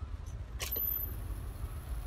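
Low, steady rumble of street traffic, with one short sharp click about half a second in.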